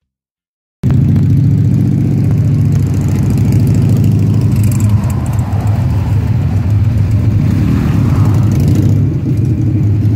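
Motorcycle engines running close by, starting abruptly about a second in and staying loud and steady as the bikes idle and pull away.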